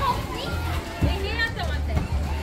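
Busy amusement-arcade din: children's voices and chirpy arcade-game sounds over background music with a steady bass beat.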